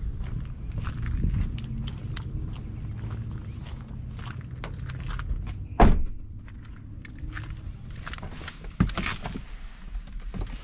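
Footsteps and scuffing as someone climbs into an SUV's driver seat through the open door, then a heavy thunk about six seconds in and a lighter one near the end.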